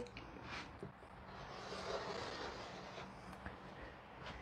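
Rotary cutter blade rolling through layered cotton fabric along the edge of a quilting ruler: a faint, soft rasping cut from about a second in until a little past three seconds.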